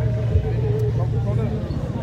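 A vehicle engine idling close by, a steady low rumble, under faint, muffled men's voices.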